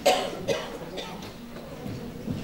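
A person coughing, three short coughs about half a second apart, the first the loudest.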